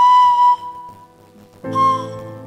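Pan flute playing two breathy notes with a sharp, chiffy attack: one at the start held about half a second, then a second, slightly higher note near the end, over softer sustained lower chords.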